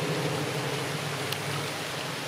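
Steady rain falling, an even hiss with a low steady hum underneath.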